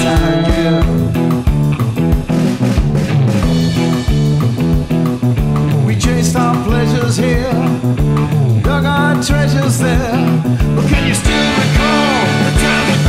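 Electric guitar playing a rock part over a full backing track with drums and bass, a steady driving beat throughout.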